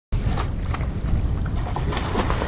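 Steady wind rumble on the microphone, with a few faint short sharp sounds over it.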